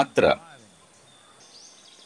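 A man's voice ends a phrase at the start, then a quiet pause holding faint outdoor background: a thin steady insect trill and a faint chirp near the end.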